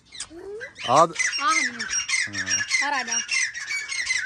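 A flock of cockatiels squawking and chattering at once, a rapid run of short harsh calls that starts about a second in and keeps on, as a hand reaches toward a bird clinging to the cage wire.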